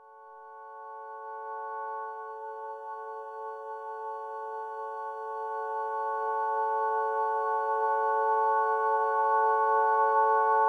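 Light ambient drone sample in F-sharp minor: a held chord of several steady tones swelling in from silence and slowly growing louder.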